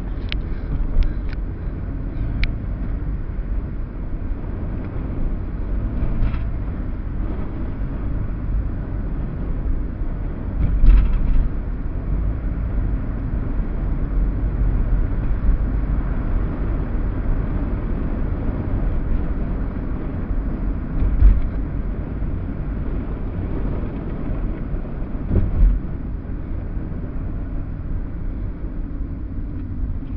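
Car cabin road noise heard through a dashcam microphone while driving at low speed: a steady low rumble of engine and tyres, with a few brief low thumps, about three spread through the drive.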